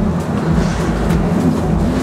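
Tram running, heard from inside the passenger cabin: a steady low rumble and hum with a few faint clicks.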